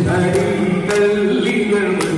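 A group of men singing together in a chant-like unison, holding long notes, with hand claps keeping time.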